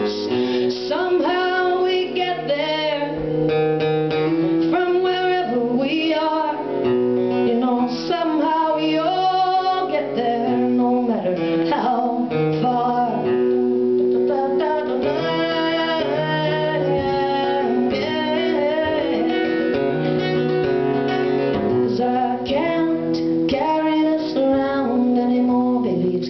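Acoustic guitar strummed steadily in a folk song, with a woman singing along at times.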